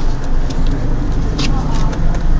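Stationary car's engine idling, heard from inside the cabin as a steady low rumble. Over it come a few light clicks and rustles as a passenger gets out through the open rear door, the loudest about a second and a half in.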